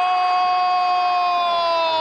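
Football commentator's long, held goal call: one sustained high-pitched shout that sags slightly in pitch as it ends.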